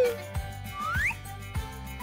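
A cartoon whistle sound effect over background music with a steady beat. A falling whistle ends just as it starts, and a short rising whistle glide follows about a second in.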